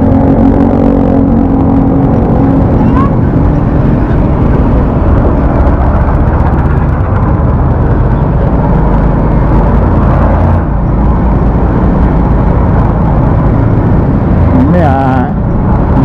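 Motorcycle engine running while riding in traffic, under heavy wind rumble on the helmet-mounted microphone. A steady engine tone shows in the first couple of seconds, then the wind and road noise take over.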